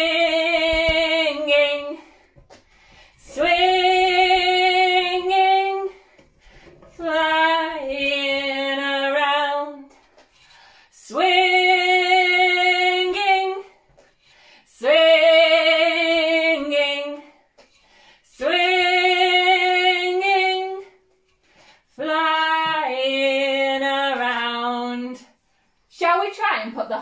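A woman singing unaccompanied, drawing out "swinging" seven times. Each is held on one note and then drops to a lower note, with short breaks between.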